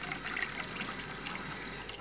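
Steady stream of water from a kitchen tap running into a drinking glass, filling it to the brim.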